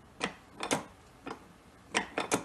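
PepeTools ring stretcher being worked by its lever, giving about five short sharp clicks at irregular spacing, two of them in quick succession under a second in, as the mandrel stretches a 22K gold band in small pulls.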